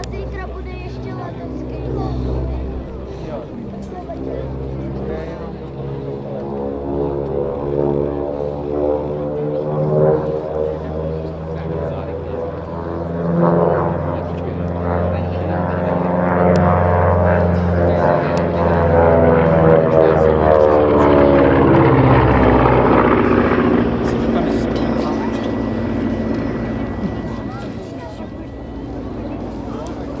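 Beech C-45 Expeditor's twin Pratt & Whitney R-985 radial engines in a fly-by. The engine note builds and rises in pitch as the plane approaches, is loudest just past the middle, then drops in pitch and fades as it goes away.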